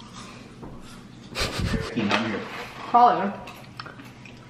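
A woman's short laugh and a brief word or two, after a short noisy rustle about a second and a half in.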